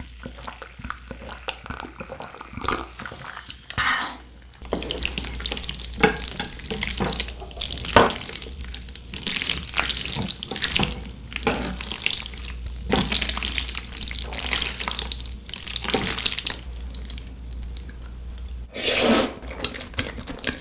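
Creamy spaghetti being stirred and tossed with wooden chopsticks, a dense run of wet, sticky squelches and clicks. It is preceded by a few faint sips and swallows of iced cola. About a second before the end comes a louder slurp of noodles.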